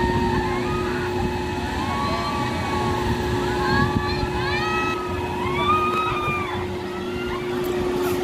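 Riders on a spinning amusement-park thrill ride screaming: many drawn-out, overlapping high shrieks that rise and fall in pitch, thickest in the middle. Underneath runs a steady mechanical hum and a low rumble.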